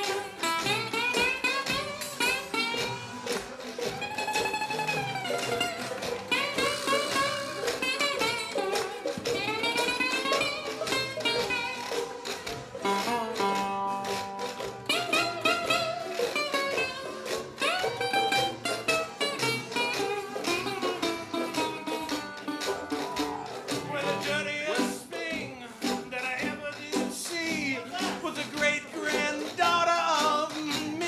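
Acoustic jug band playing an instrumental break in a blues tune, a guitar solo leading over the band's accompaniment, with melodic lines that bend up and down in pitch.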